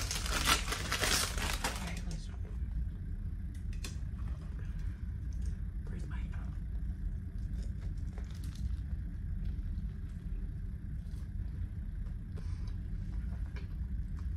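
A plastic condiment packet crinkling and being torn open for about two seconds. Then a steady low hum, with faint clicks and soft sounds of biting into a toasted sandwich.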